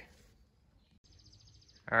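Near silence between words, with a faint high, rapid trill in the second half.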